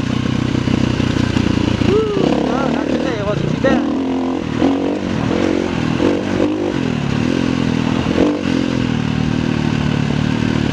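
KTM 350 EXC-F single-cylinder four-stroke dirt-bike engine under way on a dirt trail, its pitch rising and falling with the throttle, with knocks and rattles from the bike over rocky ground.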